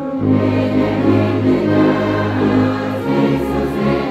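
A congregation singing a hymn together with a church brass orchestra, a tuba close by holding a deep bass note that changes about three seconds in.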